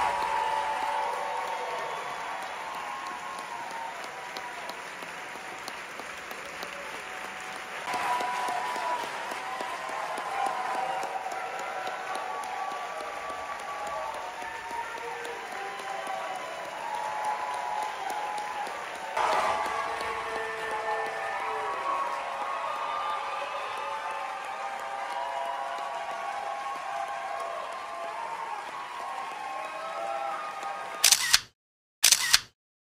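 Theatre audience applauding, with some cheering voices mixed in. The level jumps abruptly twice, about eight and nineteen seconds in.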